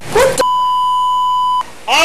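A single steady electronic beep, one unchanging tone held for just over a second, with a short voice sound just before it and another just after.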